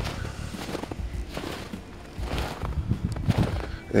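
Footsteps crunching in snow, irregular steps with a brief lull about two seconds in.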